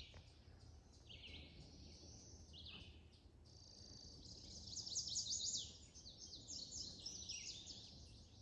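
Faint birdsong: high, quick chirps and trills that go on throughout and are loudest about five seconds in.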